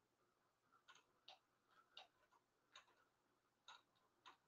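Near silence broken by five faint, short clicks at irregular intervals.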